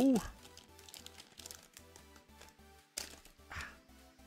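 Two short crinkles of a foil booster-pack wrapper, about half a second apart and about three seconds in, over quiet background music.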